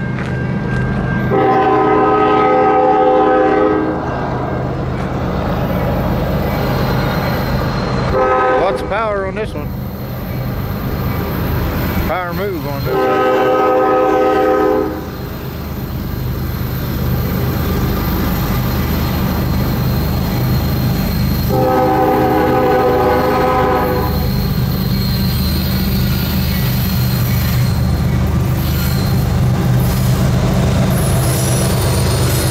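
CSX freight's diesel locomotives sounding a multi-tone air horn for grade crossings: a long blast, a short one, then two more long ones. Underneath is the low, steady rumble of the lead locomotives working upgrade under load, growing louder as the train comes closer.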